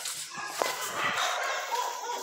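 A street dog making brief, faint vocal sounds.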